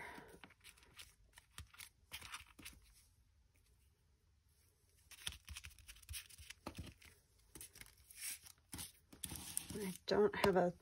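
Paper, cardboard and a crinkly mylar sheet being handled on a craft table: faint scattered rustles, crinkles and light taps, with a brief lull about three to five seconds in.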